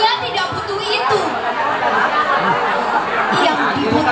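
A girl's voice reciting a poem in Indonesian into a microphone, over the steady chatter of a crowd.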